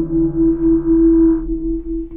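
A held electric guitar note from a Stratocaster through the Ceriatone OTS amp's overdrive channel, sustaining with a wavering pulse in its level and fading, its upper overtones dropping away about one and a half seconds in.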